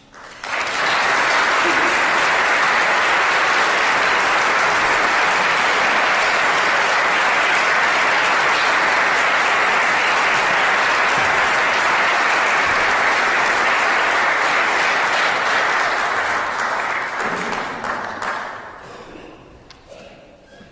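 Audience applauding in a concert hall. The applause starts suddenly, holds steady and dense, and dies away over the last few seconds.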